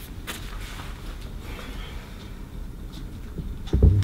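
Low, steady room noise with a short click about a quarter second in and a loud, dull thump near the end.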